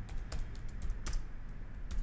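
Typing on a computer keyboard: a quick, uneven run of keystroke clicks.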